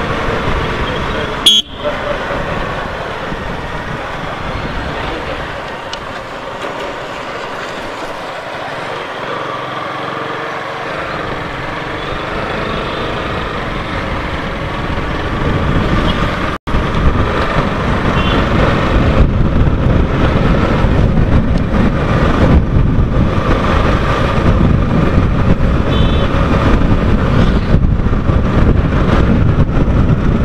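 Riding noise from a Yamaha R15 V3's 155 cc single-cylinder engine, with tyre roar and wind buffeting on a helmet-mounted camera, in town traffic. There is a sharp click about a second and a half in and a brief dropout about halfway through, and the wind rumble grows much louder in the second half.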